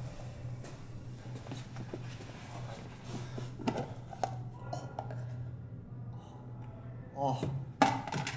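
A plastic spoon and plastic dish being handled: scattered light clicks and knocks over a steady low hum. A man exclaims near the end.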